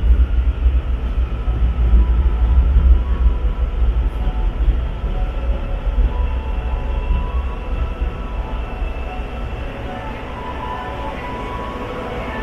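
Hyundai Rotem metro train heard from inside the passenger car while moving: a heavy low running rumble that gradually quietens as the train slows into a station, with faint steady tones showing in the second half.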